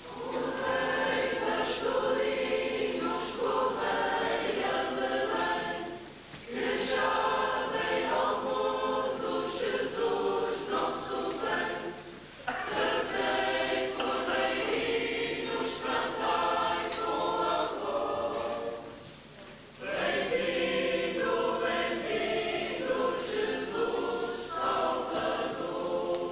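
Mixed church choir of men and women singing, in four long phrases with short breaks about six, twelve and nineteen seconds in.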